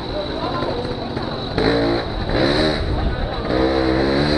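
1992 Aprilia Classic 50 Custom moped's two-stroke engine running at low speed. Its revs rise and fall a few times in the second half, each rise louder.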